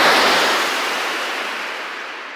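A surf-like wash of noise, a produced whoosh effect ending the radio show's outro jingle, fading out steadily.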